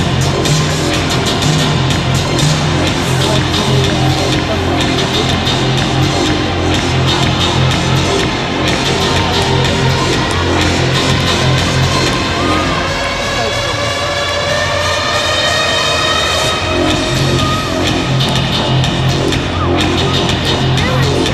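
Loud electronic music with a heavy bass beat playing over an arena PA, with the crowd cheering underneath. About twelve seconds in the bass drops out for a few seconds under a slowly rising tone, then the beat comes back.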